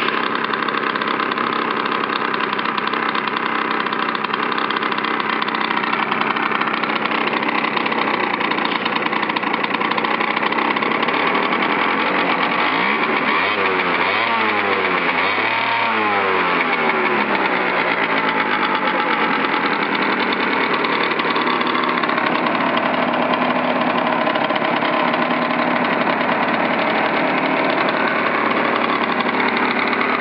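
Yamaha Aerox 50cc two-stroke scooter engine idling steadily. About midway through, the throttle is blipped a few times, with the revs rising and falling over several seconds, before the engine settles back to idle.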